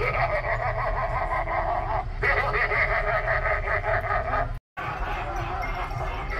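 A Halloween animatronic clown's recorded voice playing through its small built-in speaker, a rapid cackling laugh over a steady low hum. It breaks off abruptly about four and a half seconds in, and a different prop's recorded sound follows.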